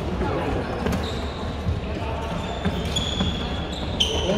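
Badminton rally in a reverberant sports hall: sharp racket strikes on the shuttlecock about a second in and near the end, with short high squeaks of shoes on the court floor. Voices chatter in the background.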